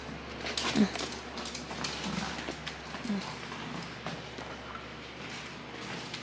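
A small dog's claws clicking on a hardwood floor as it moves about, in scattered irregular ticks.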